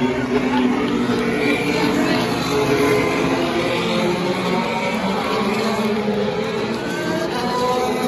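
IndyCar race cars' twin-turbo V6 engines running at low, steady speed on the pace laps, the field passing in front of the grandstand, with voices underneath.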